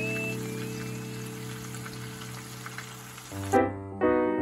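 Shrimp and garlic frying in olive oil in a pan, a steady sizzle under background music whose held notes slowly fade. Near the end the sizzle cuts off and a piano phrase begins.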